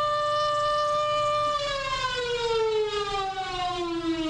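Civil defense warning siren, the signal to take cover. It holds one steady tone, then from about one and a half seconds in slowly falls in pitch.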